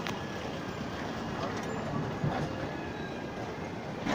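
Tuticorin–Mysuru Express passenger train rolling past, a steady rumble of its coaches on the track, with one louder knock just past halfway.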